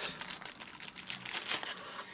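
Thin clear plastic bag crinkling in the hands as a thermocouple lead is pulled out of it: an irregular run of small crackles.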